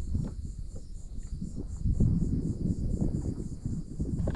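Uneven low rumble of wind and rippling water around a kayak, under a steady high-pitched pulsing chorus of insects.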